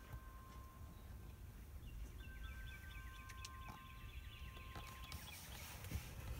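Faint birdsong: a couple of long steady notes, then a run of quick repeated chirps from about two seconds in, over a low rumble.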